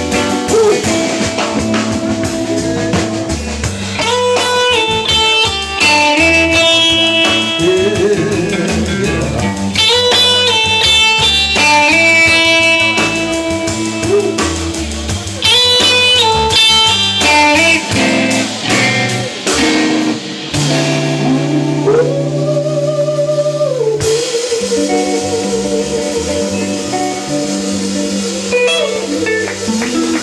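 Live electric blues band playing an instrumental passage: a Telecaster-style electric guitar plays a lead solo of bent, sliding notes over bass guitar and drum kit.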